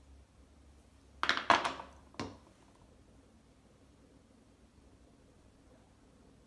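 Handling noise while working clay on a banding wheel: a short burst of scraping knocks about a second in, then a single knock, against a quiet room.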